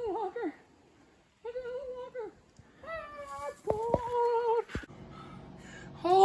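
A person whimpering in four short, high-pitched cries, each under a second, from the cold of bare skin pressed against snow. After about five seconds they give way to a quiet steady low hum.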